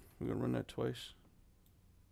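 A man's voice in the first second, a few syllables with no clear words, then a few faint computer mouse clicks.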